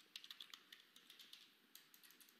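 Faint computer keyboard typing: a quick run of light key clicks that thins out to occasional taps.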